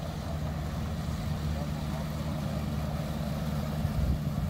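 Engine of a small motorboat running steadily at low speed as it passes, a low hum slowly growing louder.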